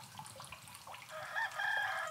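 A rooster crowing: one long call that starts about a second in.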